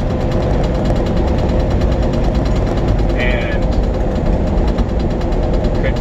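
Steady engine and road noise inside a truck's cab while driving, low and continuous.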